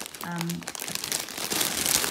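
Clear plastic bags holding balls of cotton thread crinkling as a hand presses and moves them, a dense crackle that grows louder in the second half.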